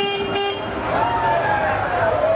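A horn toots once, lasting under a second, with two sharper blasts at its start, then people's voices carry on.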